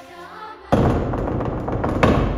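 Heavy pounding of a gloved fist on a door: one loud booming bang about two-thirds of a second in, ringing on, and another near the end, over quiet music.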